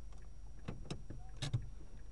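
A few short, sharp clicks and knocks inside a waiting car, the loudest about one and a half seconds in, over the low steady hum of its idling engine.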